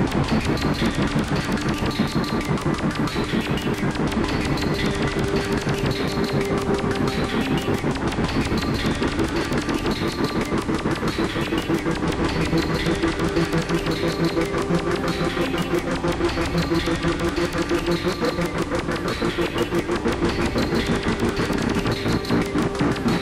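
Experimental electronic music played live: a dense texture with a fast, even pulse under a steady held drone tone.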